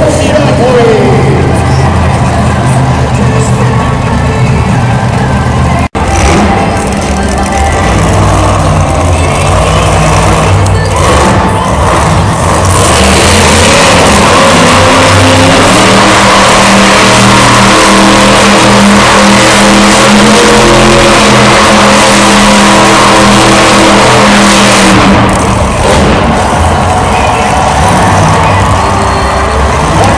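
Monster truck's supercharged V8 engine running loud in an arena, over a background of voices and music. The engine noise swells to its loudest around the middle, holds steady for about twelve seconds, then eases off.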